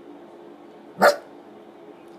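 A small dog barks once, short and sharp, about a second in, over a faint steady hum.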